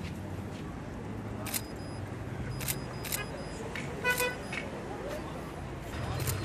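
Camera shutter clicks, four of them between one and a half and four seconds in, over a low steady hum. A short beep sounds at the same moment as the last click.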